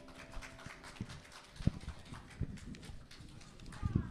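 Irregular footsteps and knocks on a wooden platform floor, with a few heavier thumps about one and a half seconds in, near the middle and at the end.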